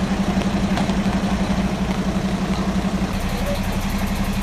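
A motor engine idling steadily, a low even hum with a fast regular pulse.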